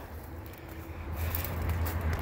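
Low, steady outdoor rumble with no distinct event.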